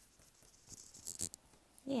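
Paintbrush bristles scrubbing thick acrylic paint onto paper in a few short strokes about a second in, the side of the brush worked against the paper to make texture. A woman starts talking near the end.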